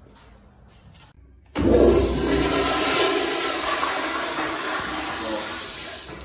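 Commercial flushometer toilet flushing: a sudden loud rush of water starts about a second and a half in, then slowly tapers off.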